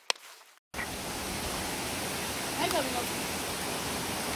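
Steady rushing noise of a waterfall, cutting in abruptly about a second in after a short click and a moment of silence. A brief voice sound breaks through it midway.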